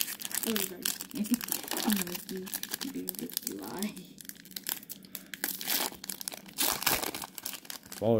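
Crinkling of a baseball card pack wrapper, handled and torn open, as a rapid run of small crackles and rips, with a quiet voice murmuring in the first half.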